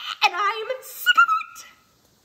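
A woman's wordless, exasperated scream, high and wavering, that jumps to a shrill squeal about a second in and cuts off abruptly near the end.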